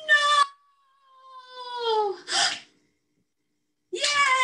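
A woman's mock-dramatic crying out: a short high cry, then a long wail falling slowly in pitch, ending in a short breathy burst like a sob.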